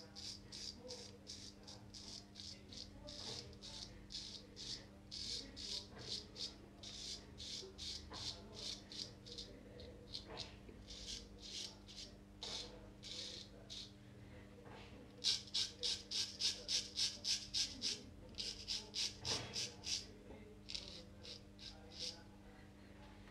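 Henckels Friodur 17 stainless straight razor cutting through lathered beard stubble in short strokes, a crisp rasping scrape repeated about two to three times a second. The strokes grow louder in a quick run about fifteen seconds in.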